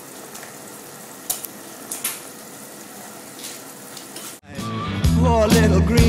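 Pot of water boiling with a steady hiss, with a few short plops as pieces of fresh pasta are dropped in. About four and a half seconds in it cuts abruptly to a rock song with singing.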